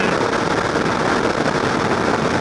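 Steady wind rush and engine and road noise of a motorcycle at highway speed, with wind buffeting the microphone.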